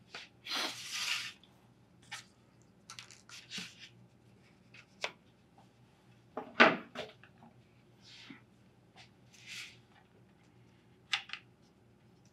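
Corrugated cardboard pieces and tools being handled on a workbench: scattered light clicks, taps and short rustles, with one louder knock about six and a half seconds in.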